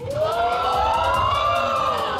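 Studio audience's collective 'oooh' of surprise, many voices rising in pitch together and held for over a second.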